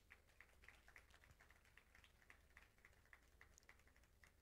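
Near silence with faint, sparse hand claps from a seated audience, irregular and several a second.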